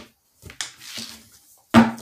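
Tarot cards being handled: a faint click and a soft sliding rustle, then one sharp snap near the end as a card is turned up and put down on the table.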